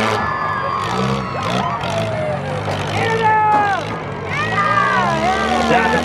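Demolition derby cars' engines running in the dirt arena, a steady low drone under shouting voices.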